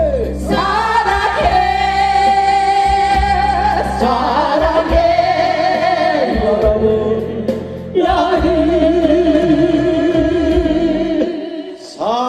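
A group of men and women singing a song together into microphones. It comes in long held phrases of about four seconds each, the last one with a wavering held note.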